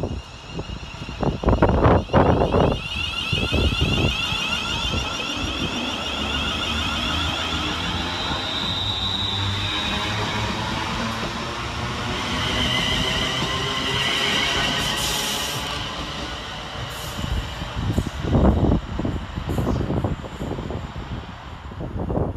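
West Midlands Railway Class 350 Desiro electric multiple unit running through the platform: wheels rumbling on the rails under a whine from its traction motors that glides in pitch, loudest in the middle. A few short thumps near the start and again near the end.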